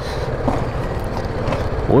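BMW G310GS single-cylinder motorcycle engine running steadily as the bike rides off at low speed.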